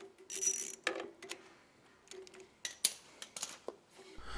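Ratchet clicking in short bursts as an 8 mm socket is turned to loosen the small bolt locking the clutch cable stop, followed by a few light metallic clicks.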